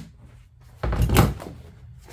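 A dull, heavy thump with a brief rumble on the wooden workbench about a second in, as the staple gun is put down and the vinyl-covered boat engine cover is shifted. It is not a staple being fired.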